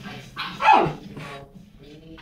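Miniature Schnauzer puppy barking once, a short bark about half a second in that drops in pitch.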